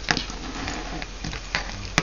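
Ribbon-hung small metal jingle bells being handled and untangled: faint rustling with a few light clicks.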